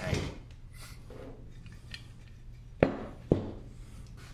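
Two sharp knocks about half a second apart near the end, from the metal paint pressure tank and its lid being handled on a workbench, with a steady low hum underneath.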